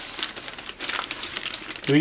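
Clear plastic bag around a boxed-fresh oscilloscope crinkling and rustling as hands grip and move it, a run of irregular crackles.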